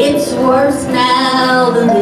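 A woman singing through a microphone and PA, holding long notes that slide up and down in pitch, over live band accompaniment with upright bass.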